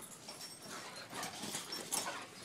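Two boxer dogs play-wrestling: faint, irregular dog noises and scuffling.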